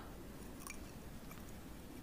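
Quiet room tone with a few faint, short clicks.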